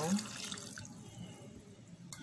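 A glass of water poured into a stainless steel saucepan of pineapple peels and lemon halves, splashing and trickling, then dying away over about a second as the glass empties.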